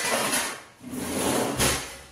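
Kitchen drawer under the counter being pulled open and its contents shifted, in several scraping bursts with a last, heavier knock about a second and a half in.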